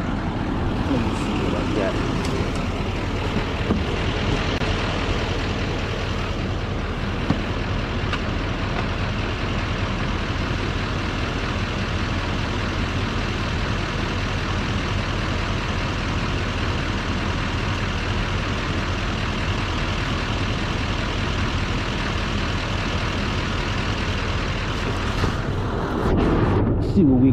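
A diesel semi truck engine idling steadily, used as the booster for jump-starting a pickup with a dead battery.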